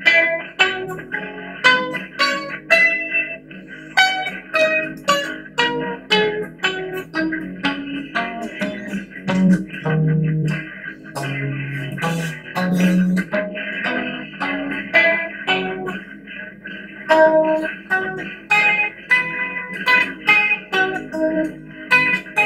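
Guitar playing single picked notes of the A minor pentatonic scale in a rock style, a few notes a second. The line steps down to low notes around ten to twelve seconds in, then climbs again.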